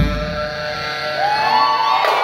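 Live brass-house band music: one drum hit, then the drums drop out while a baritone saxophone holds long notes and a higher line slides upward in the second half.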